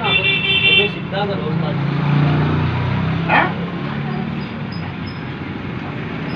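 A vehicle horn sounds for about a second at the start. A motor vehicle's engine hum then swells and fades through the middle, as of traffic going past.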